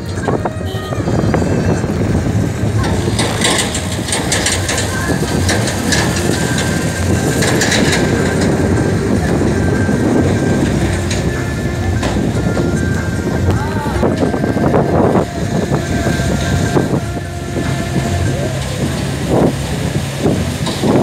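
Taxi running along a rough mountain road, heard from inside the cabin: a steady rumble of engine and tyres, with voices over it.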